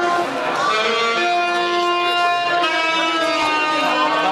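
Saxophone playing a slow line of long held notes, each sustained for a second or more before moving to the next, with crowd chatter underneath.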